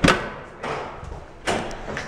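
Two dull thumps about a second and a half apart, as a window that will not close is pushed and knocked at to shut it.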